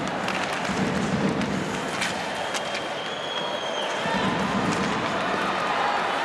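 Ice hockey game sound: skates scraping on the ice and sharp clacks of sticks and puck over steady arena crowd noise.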